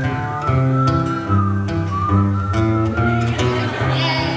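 Acoustic guitars playing chords while someone whistles a slow melody over them, a single pure line that drifts gently up and down.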